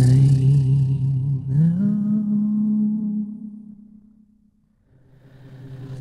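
A voice humming long, held notes: a low note that glides up to a higher one about one and a half seconds in and fades away a little after three seconds, then after a short gap a low note swells back in near the end.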